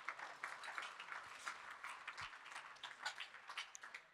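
Faint applause from an audience, a dense patter of many hands clapping that dies away near the end.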